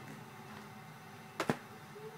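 Hard plastic VHS clamshell case clicking shut: two sharp clicks close together about one and a half seconds in, over a faint steady low hum.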